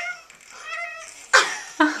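A baby's high-pitched squealing coo, then short loud bursts of laughter starting about one and a half seconds in.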